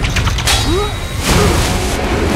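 Sound effects of a mechanism: quick mechanical clicks and ratcheting, with short creaky squeaks and two loud whooshes, about half a second and just over a second in.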